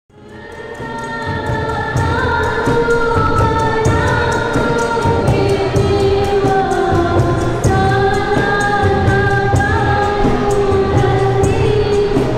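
Malay ghazal music performed live: a girl singing a slow melody into a microphone, accompanied by harmonium, violin and hand drums keeping a steady beat. The music fades in over the first two seconds.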